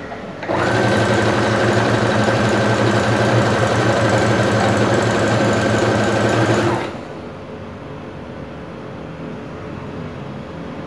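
Electric sewing machine running steadily as it stitches a hem along a folded fabric edge. It starts about half a second in and stops after about six seconds.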